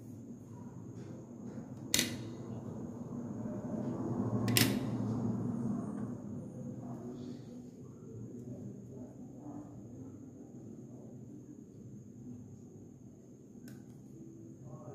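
Handling of painting supplies on a tabletop while mixing paint: two sharp clicks about two and a half seconds apart, over a low rumble of handling noise and a thin steady high whine.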